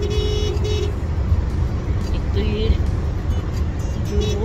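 Steady road and engine noise inside a car cabin at highway speed, with a held tone that stops about a second in and a brief wavering pitched sound about two and a half seconds in.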